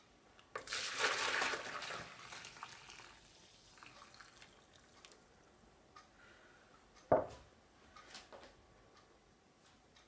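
Vegetable stock poured from a stainless steel saucepan into a plastic measuring jug: a splashing pour starts about half a second in and thins to a trickle by about three seconds. About seven seconds in, a single knock as the pan is set down on a wooden chopping board.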